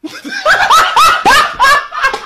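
A man laughing hard: a quick run of loud, high-pitched laughs, starting about half a second in.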